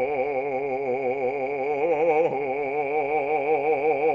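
Operatic bass voice holding a long sung note with a wide, even vibrato, sliding down briefly a little past two seconds in before holding again.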